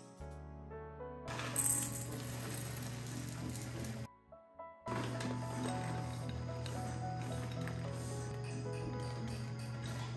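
Background music over a wire whisk clinking and scraping in a stainless steel bowl as muffin batter is stirred. There is a brief drop-out around four seconds in.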